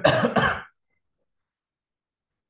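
A man clears his throat with two short coughs in quick succession in the first second.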